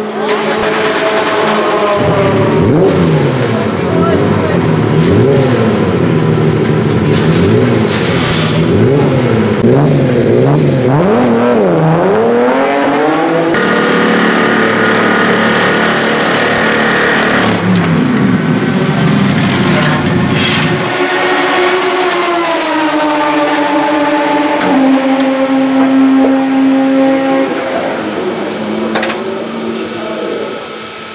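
Race-car engines in a pit lane. A BMW M3 E36 GTR's engine is revved up and down over and over for the first half. Then a Mercedes-Benz SLS AMG GT3's V8 runs at a steady speed, falls in pitch as the car slows into its pit box, and holds a steady idle before fading near the end.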